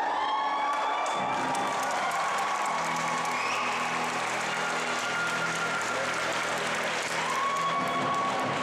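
Audience applauding and cheering as a martial arts demonstration ends, over background music playing held notes.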